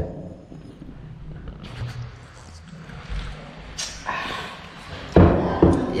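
A few soft knocks of dishes being handled on a wooden table, with a voice coming in near the end.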